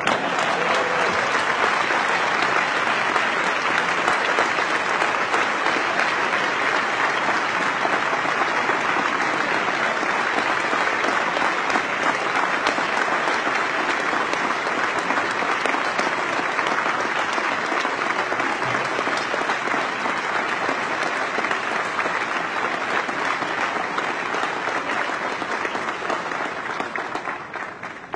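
A large audience applauding continuously, starting at once and dying away near the end.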